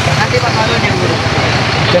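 Busy outdoor noise: an engine running steadily under the chatter of a crowd, with no single event standing out.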